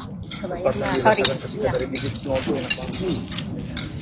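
Indistinct talking at a dinner table, with metal cutlery clinking against plates several times.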